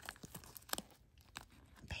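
Faint crinkling and a handful of soft clicks as fingers rummage through wrapped items and packets inside a small zippered pouch.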